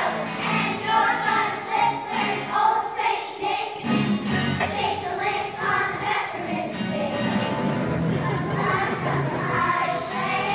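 Children's choir singing a song together.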